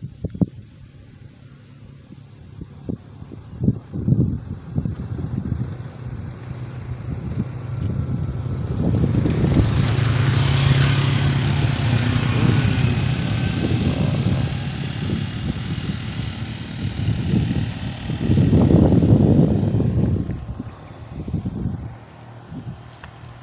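Motor scooter passing on the road, its engine building to a loud, steady hum and then easing off, with another loud surge near the end.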